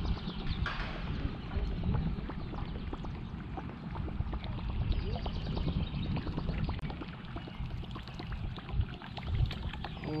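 Water lapping and sloshing against a fishing boat's hull, with many small irregular clicks and knocks.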